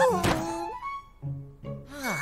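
Cartoon soundtrack: a thunk sound effect about a quarter-second in, under the end of a line of speech, then soft background music with a few held notes.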